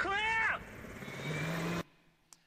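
Action-film soundtrack played over a hall's loudspeakers: a short sound that rises and falls in pitch, then a steady rumble with a low hum. It cuts off suddenly near the end as the clip is stopped.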